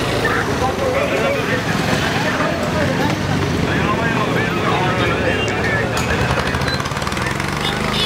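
People talking over the steady hum of a vehicle engine running.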